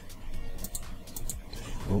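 Several quick, light clicks from a computer mouse or keyboard in use, about half a second to a second and a half in, over faint background music.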